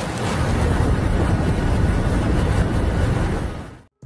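A loud, steady rushing rumble, heaviest in the low end, that swells in and fades away near the end.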